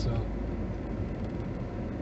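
Steady road and engine noise inside the cabin of a moving vehicle, a low even rumble.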